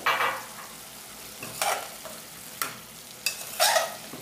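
Chopped kale stems, bacon and calabresa sausage sizzling in a pot over high heat as the last of the cooking liquid boils off, with a spoon scraping through them in about four short stirring strokes.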